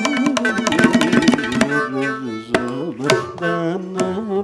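Carnatic ensemble playing: rapid mridangam and ghatam strokes under a sliding melody for the first couple of seconds, then the drumming thins to a few single strokes while the melody carries on with wide pitch slides.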